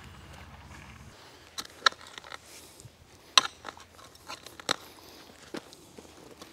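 Long-handled garden shovel digging into soft bed soil to turn up potatoes: scattered sharp scrapes and knocks, the loudest about halfway through.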